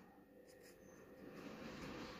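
Felt-tip marker faintly scratching on paper as it writes, growing a little louder in the second half.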